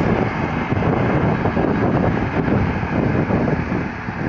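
John Deere tractor engine running steadily as it pulls a cone plot seeder through stubble, mixed with wind buffeting on the microphone.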